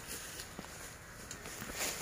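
Faint footsteps and rustling in dry leaf litter, with a few soft crackles.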